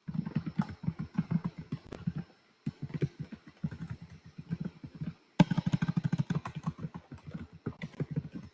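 Typing on a computer keyboard picked up by a conference microphone: rapid, irregular key clicks with a dull thump to them, cutting out briefly twice.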